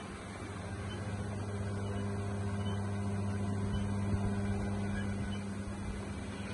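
A steady low hum that does not change: a machine or electrical hum in the room. Nothing from the massage itself stands out above it.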